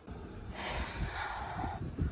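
A person's long breathy exhale lasting about a second, over a low irregular rumble on the microphone, as he reacts to the freezing cold.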